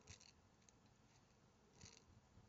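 Near silence: room tone, with a faint brief rustle just after the start and again near the end.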